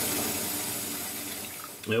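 Water running steadily in a bathtub, an even rush that fades near the end.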